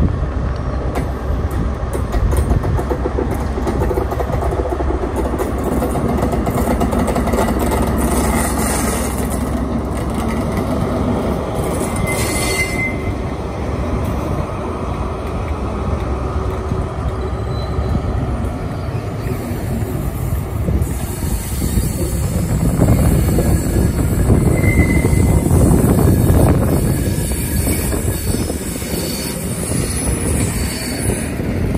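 ScotRail InterCity 125 high-speed train, a Class 43 diesel power car leading Mark 3 coaches, running past on curved track with its engine and wheels rumbling. Short high wheel squeals come about twelve seconds in and again near twenty-five seconds, and the rumble grows louder as the coaches roll by late on.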